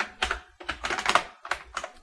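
Computer keyboard being typed on: a run of irregular key clicks as a line of text is finished and the file saved.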